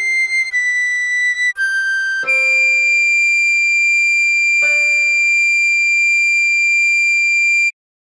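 Soprano recorder playing a melody: three short descending notes, then one long held high D, over keyboard chords struck about two and about four and a half seconds in. Everything stops abruptly near the end.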